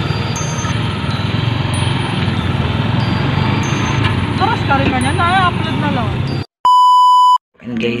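A motor vehicle's engine and road noise heard from aboard while riding, a steady low rumble. Near the end the sound cuts out and a loud steady electronic beep tone sounds for just under a second.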